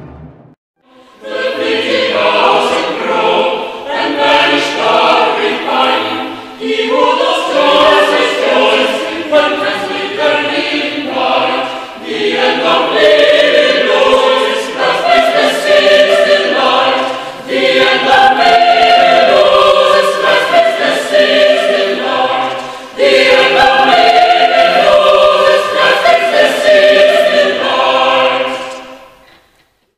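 Mixed chamber choir singing in several parts, in phrases broken by a few short pauses, the sound fading away at the end.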